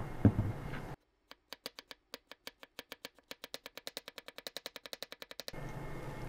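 Chef's knife slicing a carrot on a plastic cutting board: a run of sharp knocks of the blade hitting the board, starting slow and quickening to about seven or eight a second, then stopping.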